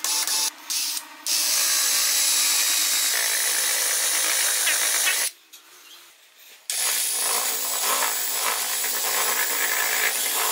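Cordless drill spinning a homemade sandpaper sanding drum against wood: a couple of short trigger bursts, then a steady run with the hiss of sandpaper. It drops away for about a second and a half in the middle, then runs steadily again.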